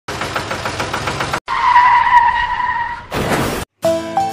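A quick run of vehicle sounds, cut sharply one from the next. First an engine puttering at about eight beats a second, then a steady, held tire-like squeal, then a short sound falling in pitch. Music begins just at the end.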